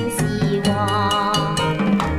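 Chinese pop song playing: a sung line ends on a long held note with vibrato, over a steady beat of drums, percussion and bass.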